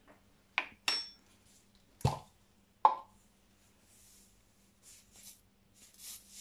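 Four sharp clicks and knocks of kitchen containers being handled in the first three seconds; one rings briefly like glass, and one has a dull thump. Near the end comes a faint light hiss of sugar being shaken from a plastic shaker into the Thermomix bowl.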